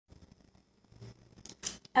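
Handling noise from the camera being touched and set in place: a few faint clicks, then a short rustling scrape near the end.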